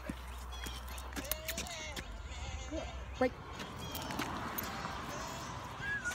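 A dog and its handler walking on a leash over a concrete sidewalk: scattered sharp clicks of steps and the dog's collar hardware, over a steady low rumble.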